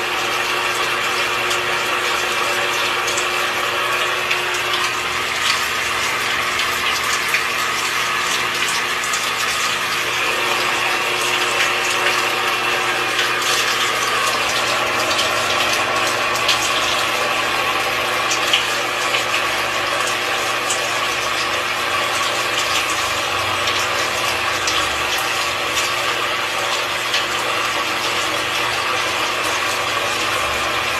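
Overhead rain shower running steadily, water spraying and splattering with small scattered drips, over a faint steady hum.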